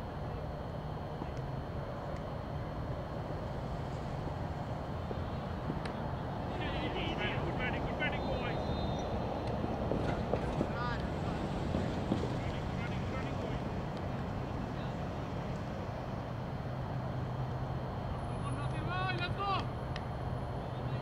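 Distant shouts and calls from players across an open field, heard in short bursts a few times, over a steady low hum and outdoor background noise.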